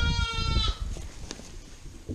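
Young lamb bleating once, a high call that ends under a second in.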